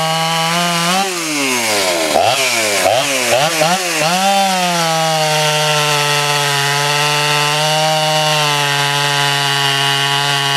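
Poulan Pro 330 two-stroke chainsaw with chisel chain cutting through a large log. The engine runs steadily in the cut. About a second in it bogs down hard several times over about three seconds, its pitch dropping and climbing back each time, then it pulls steadily again.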